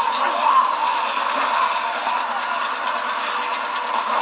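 The TV episode's soundtrack playing through a small speaker: a steady hiss-like bed of ambience with faint music and no clear dialogue.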